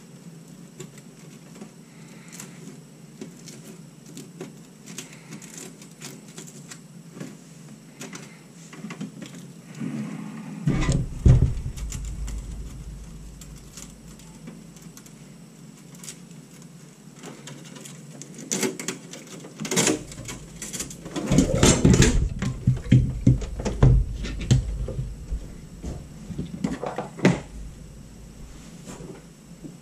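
Hand-handling of a metal PC case and its cables: small clicks and rustles, then a loud knock and rumble about a third of the way in, and a longer stretch of repeated knocks and clatter in the second half as the case is moved.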